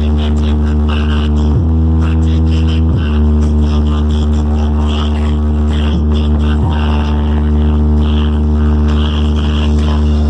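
A truck-mounted speaker wall playing electronic music loud. A deep, buzzing bass note is held for seconds at a time and briefly drops out about four times.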